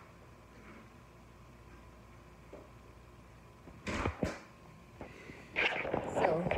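Quiet room tone, then two sharp knocks about four seconds in and a louder clatter and rustle near the end, as the phone doing the filming is picked up and handled.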